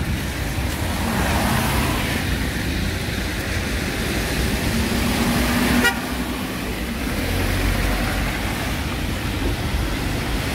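Street traffic on a wet, slushy road: a steady hiss of passing cars and engines, with a vehicle horn honking. The sound changes abruptly with a click about six seconds in.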